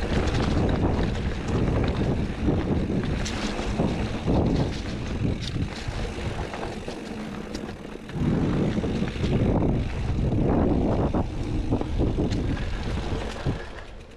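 Wind buffeting the microphone over the rumble of a Specialized Levo SL e-mountain bike's tyres rolling down a dirt singletrack, with scattered clicks and rattles from the bike over bumps. The noise eases about seven seconds in, swells again about a second later, and drops off near the end.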